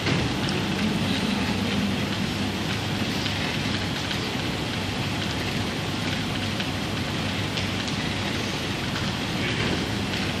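Steady, even hiss of background noise with no voice.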